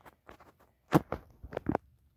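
A few short clicks and light taps, the loudest about a second in and a quick cluster just after one and a half seconds: handling noise from a handheld camera being moved.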